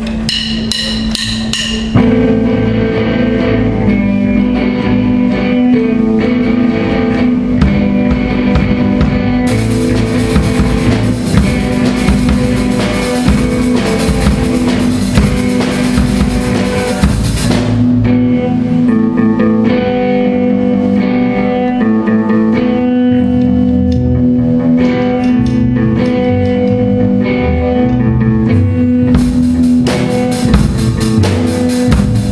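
Small rock band of electric guitar, bass and drum kit playing a loud instrumental jam live. It starts quieter and the full band comes in louder about two seconds in, with a brighter, busier top end from about ten to eighteen seconds.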